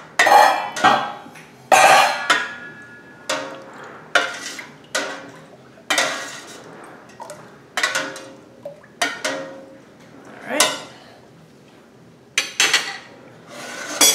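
Metal ladle stirring milk in a stainless steel stockpot, knocking and scraping against the pot's sides in irregular ringing clinks. This is citric acid being mixed into cold milk.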